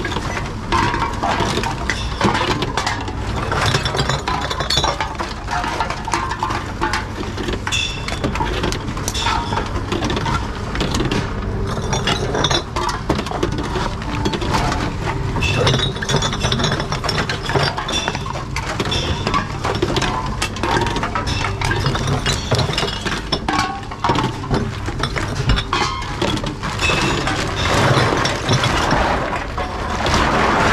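Glass bottles and aluminium cans clinking and rattling against each other as they are handled and pushed into the intake ports of reverse vending machines, over a steady low hum.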